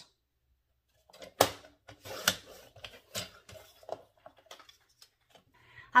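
Handling noise from craft tools and paper on a cutting mat: a string of sharp clicks and taps, roughly one a second, the two loudest in the first half.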